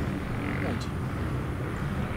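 Steady low rumble of distant vehicles in the background, with a faint voice about half a second in.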